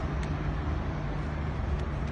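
Steady low rumble of outdoor background noise, with a few faint clicks.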